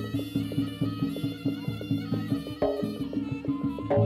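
Live jaranan gamelan music: quick, even drum and gong-chime strokes, about six a second, under a sustained reedy wind melody, with a heavier stroke a little before three seconds in.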